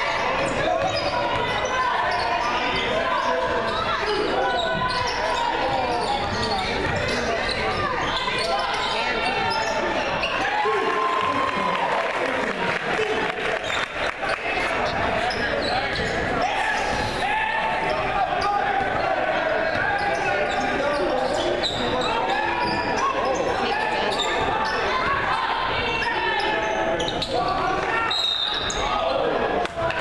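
Spectators talking and calling out over a basketball game, echoing in a large gymnasium, with the ball bouncing on the hardwood court throughout.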